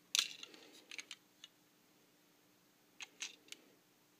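Light clicks and rustles from handling a plastic Plarail Hakone Tozan toy railcar, a cluster just after the start, another about a second in and a few more about three seconds in, with quiet between.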